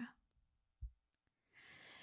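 Near silence in a pause between spoken sentences, with a brief low thump about a second in and a soft intake of breath near the end, just before the next sentence begins.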